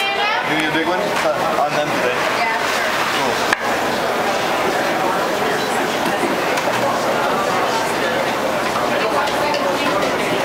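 Crowd chatter in a busy café: many overlapping voices with no single clear speaker. A single sharp click about three and a half seconds in.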